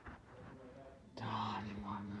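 A person's voice, faint and indistinct, turning louder just past halfway with a steady held pitch.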